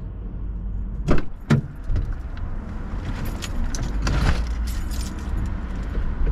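Handling noises inside a car as an insulated delivery bag is set on the passenger seat: a few sharp knocks about a second in, then rustling, over a steady low rumble.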